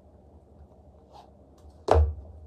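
Quiet handling noises, then a single sharp thump near the end.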